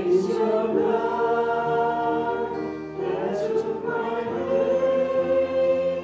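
A church congregation singing together, holding long notes that change pitch every second or so.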